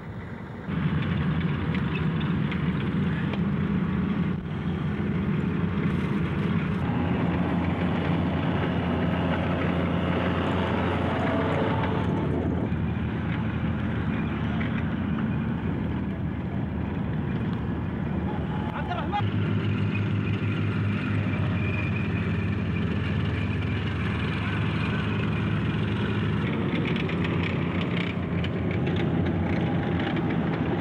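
Tracked armored vehicles, M113 armored personnel carriers among them, driving in a column across the desert: a steady drone of diesel engines and running gear, louder from about a second in.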